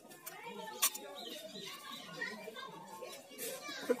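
Faint background chatter of several people talking at a distance, with one short sharp click a little under a second in.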